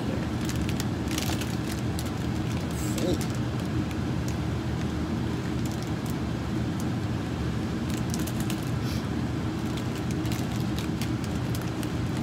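Candy-bar wrapper crinkling and rustling now and then, over a steady low background hum.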